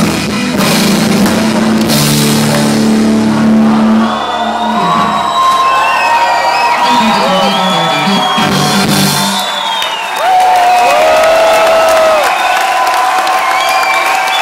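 Live rock band playing the close of a song in concert: long held chords with cymbal crashes over the first few seconds, then wavering high tones over the music for the rest.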